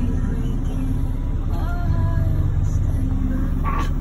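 Mack roll-off truck's diesel engine running, heard from inside the cab, its note changing about two seconds in.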